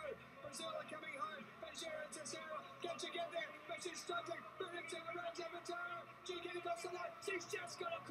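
Faint race-broadcast audio: a voice talking over background music.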